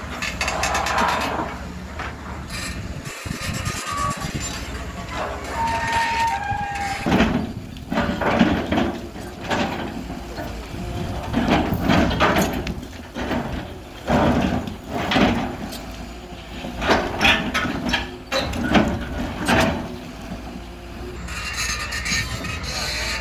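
Caterpillar tracked hydraulic excavator demolishing a masonry building: a steady engine rumble under repeated, irregular crashes of breaking concrete and falling debris, most of them from about seven seconds in.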